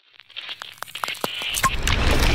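Sound effects of an animated intro: a run of sharp clicks and crackles that builds steadily louder, with a deep rumble coming in near the end as it swells into the intro music.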